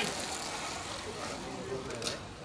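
A racing bicycle passing close by, a steady hiss of its tyres on asphalt, with faint voices in the background.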